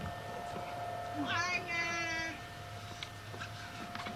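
A single high, drawn-out cry, about a second long, that falls in pitch at first and then holds steady, heard over a faint steady hum.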